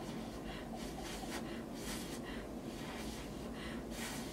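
A woman blowing soft, repeated puffs of breath onto a strip of false eyelashes, to make the lash glue set faster.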